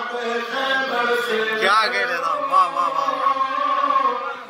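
A man's solo chanted recitation in a melodic voice, with wavering ornamented runs and then one long held note through the second half.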